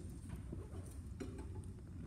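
A few faint, light knocks and taps at a music stand as a conducting baton is picked up, over quiet room tone.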